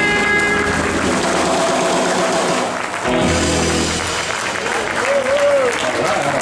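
Live rockabilly band, with hollow-body electric guitars, drums and upright bass, playing the end of a song. The music gives way to audience applause and a cheering voice in the second half.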